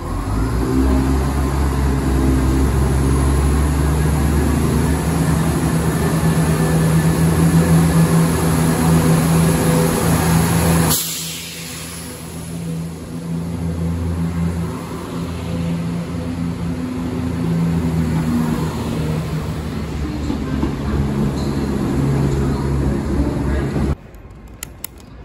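Class 170 Turbostar diesel multiple unit pulling away from the platform, its underfloor diesel engines powering up to a loud, steady low drone. About halfway through, the engine sound drops off suddenly and then builds again as the carriages run past.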